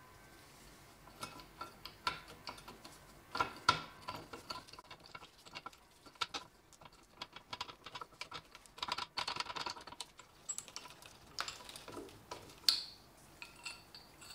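Rusty steel parts of a 4-ton jack's ratchet lever and gear clicking, tapping and scraping as they are worked off the drive shaft by hand. Irregular small clicks, with a quicker run of them a little past halfway and a sharper knock near the end.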